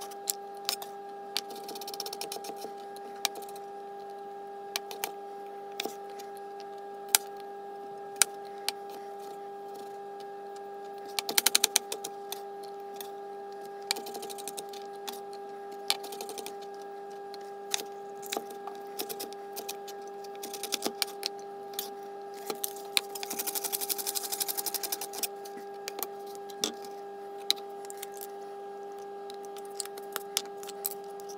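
Kitchen knife chopping vegetables on a plastic cutting board: scattered single knocks, with two quick runs of rapid chopping, one about a third of the way in and one past two-thirds. A steady hum runs underneath.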